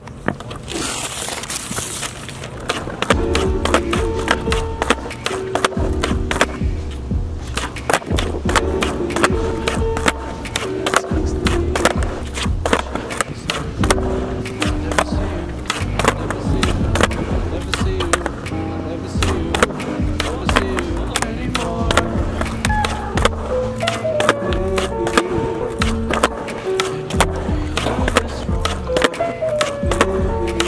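Skateboard kickflips on concrete: tail pops, board landings and wheels rolling, mixed with background music with a steady beat and bass line that comes in about three seconds in.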